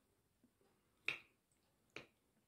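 Metal fork clicking against a ceramic plate twice while picking up food: a sharper click about a second in and another near the end.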